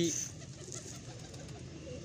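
A man's voice trails off in the first moment, then a quiet stretch of background sound with pigeons cooing faintly.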